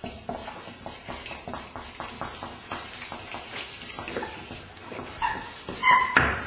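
Marker pens scribbling fast on paper: a quick run of short strokes, with a couple of brief squeaks from the felt tips near the end, the second the loudest.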